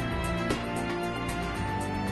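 Background music: sustained chords with a light, regular beat.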